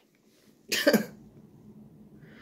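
A man coughs once, briefly, about three quarters of a second in.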